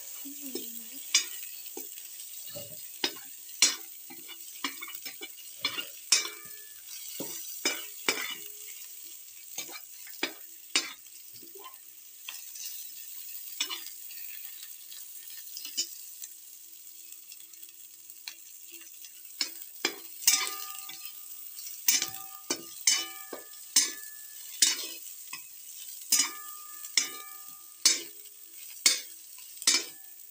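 Sliced onions frying in oil in a metal kadai, a steady sizzle while a metal ladle scrapes and taps the pan in irregular strokes; the onions are almost light brown. In the last third the taps come more often and make the pan ring briefly.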